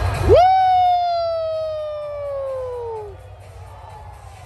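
A single long, loud "woooo" shouted by a fan near the microphone, swooping up sharply and then sliding slowly down in pitch for about three seconds, the Flair "woo" aimed at Charlotte Flair. The arena music stops as it begins, leaving low crowd noise under it.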